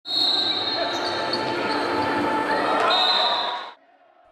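Live sound of an indoor futsal match in a sports hall: the ball and players' shoes on the hall floor amid echoing voices, with a thin steady high-pitched tone over it. It cuts off suddenly just before the end.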